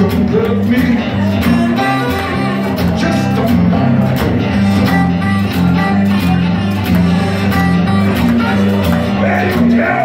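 Steel-string acoustic guitar played live in a steady, repeating bass-and-chord riff of a blues song.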